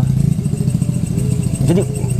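A small engine running at a steady idle: a low hum with fast, even pulses that does not change.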